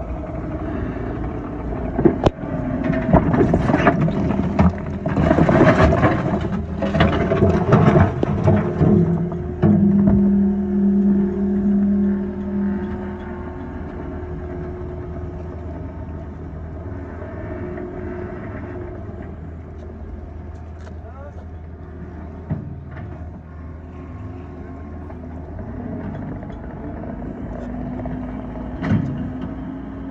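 A compact track loader tipping a bucket of limestone riprap onto a barge deck: loud clattering and crashing of rock for the first several seconds, over its running diesel engine. After that the loader's and excavator's engines run steadily.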